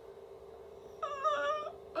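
A steady low hum runs under a short, high, wavering vocal sound about a second in, like a whine.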